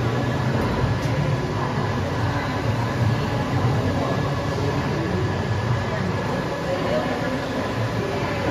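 SKYJET TDL3300 large-format double-sided roll printer running, a steady mechanical hum with a low rumble and faint high whining tones, with no clear changes.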